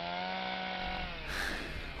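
Chainsaw engine running with a steady pitch, fading away a little past halfway through.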